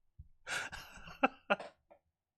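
A man's stifled laughter: a breathy rush of air, then two short, sharp bursts of voice in quick succession a little over a second in.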